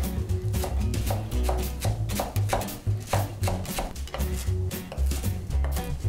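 Kitchen knife finely chopping arugula on a wooden cutting board: a steady run of quick knife strokes. Background music plays underneath.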